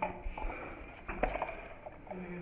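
A few light knocks and clicks, scattered through a quiet stretch, with faint murmuring voices underneath.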